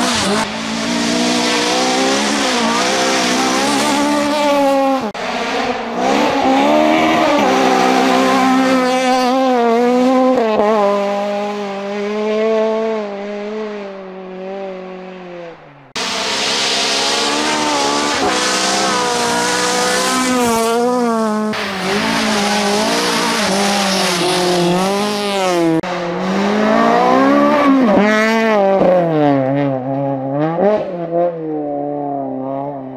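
Honda Civic rally car's four-cylinder engine revving hard and changing gear as it passes on a gravel stage, fading as it goes away. After a sudden cut about halfway through, it comes in again, revving up and down through the corners, with gravel noise near the end as it slides.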